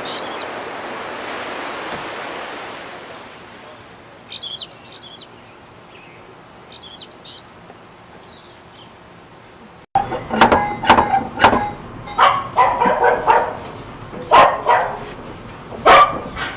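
A dog barking several times, with sharp knocks among the barks, starting suddenly about ten seconds in. Before that there is only a fading hiss and a few faint chirps.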